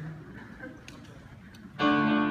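Quiet room murmur in a large hall, then near the end the accompaniment comes in suddenly with a loud, sustained chord: the start of the instrumental play-through of the refrain.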